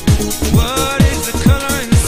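Instrumental passage of a 1990s Eurodance track: a four-on-the-floor kick drum at about two beats a second under a synth line whose notes slide up and down in pitch.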